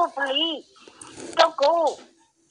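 Speech: short voiced phrases with rising-and-falling pitch, broken by a brief quieter gap about a second in.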